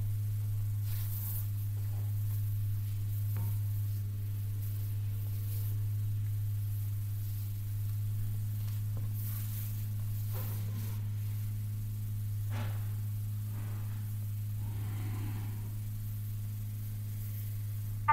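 A steady low hum, with a few faint clicks scattered through it.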